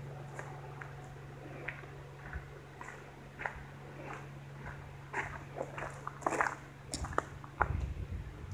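Footsteps on a gravelly concrete pad and then a dirt trail: light, irregular crunches and scuffs that come more often in the second half. Under them runs a steady low hum that stops near the end.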